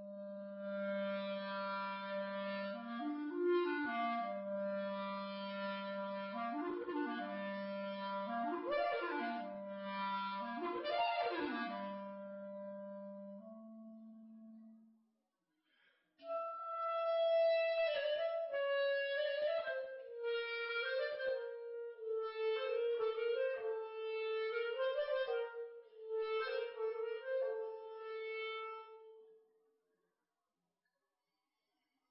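Clarinet played on a Clark W. Fobes Debut mouthpiece, in two phrases: the first sits on a held low note with repeated leaps up an octave and more, and after a short break about halfway, the second runs higher with quicker, separately tongued notes.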